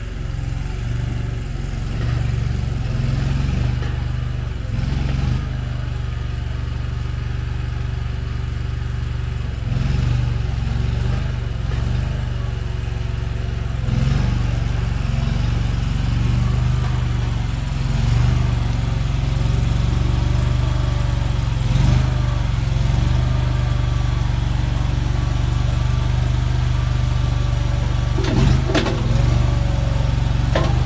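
AGT CRT23 mini skid steer's engine running steadily under load while the tracked loader drives and lifts a bucket of dirt. It gets louder about halfway through, with a faint wavering whine over it, and a few clanks near the end.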